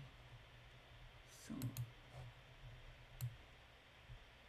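Faint clicks of a computer mouse: two quick clicks about a second and a half in, and one more about three seconds in.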